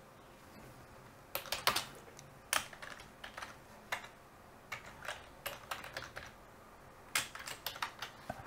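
Typing on a computer keyboard: irregular runs of keystrokes with short pauses between them, starting a little over a second in.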